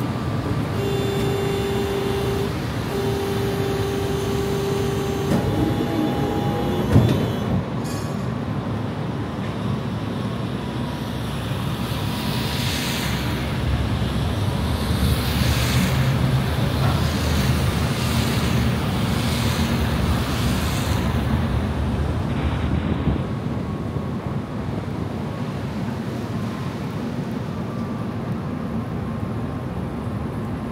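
Tatra T3 tram running, heard from inside the car: a steady low rumble of motors and wheels on the rails, with a steady whine for the first few seconds and a single knock about seven seconds in. In the middle, several hissing swells of tyres on the wet road rise and fall.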